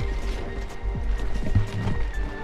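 Background music with steady held tones over a low, regular thumping beat.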